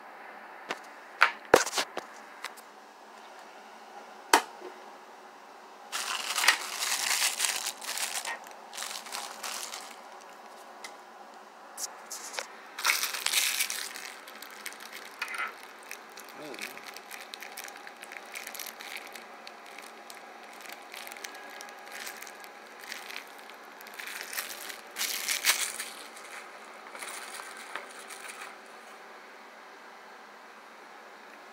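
Plastic packaging crinkling and small plastic tripod parts clicking against a wooden table as they are unwrapped and handled. A few sharp clicks come in the first few seconds, then crinkling in irregular bursts.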